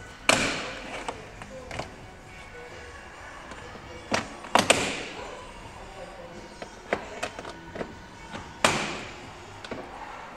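Plastic door-trim clips popping loose as a plastic pry tool levers the front door panel of a 2017 BMW 5 Series away from the door: four sharp pops, two of them close together about halfway through, with fainter clicks of the tool and panel between.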